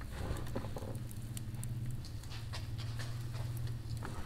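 Hands mixing shredded radish and chopped radish greens in a bamboo basket: soft, irregular rustling and light clicks of the vegetables against the woven basket, over a steady low hum.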